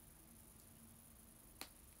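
Near silence: room tone with a faint low hum and a single short click about one and a half seconds in.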